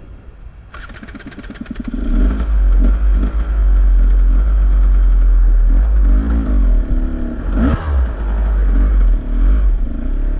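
Enduro dirt bike engine starting about a second in, then running loud with throttle blips that rise and fall in pitch.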